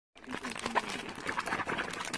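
A small dog making short vocal sounds over a dense run of fast clicks.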